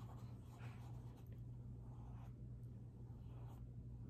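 Faint, soft swishes of a paintbrush stroking paint onto paper, several short strokes at uneven intervals while a small circle is painted.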